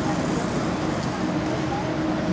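Steady rushing background noise of a large indoor arena, with faint indistinct voices underneath.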